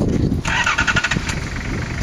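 Off-road 4x4 SUV's engine revving under load as the vehicle struggles on a steep muddy slope, turning harsher and louder for about a second, starting half a second in.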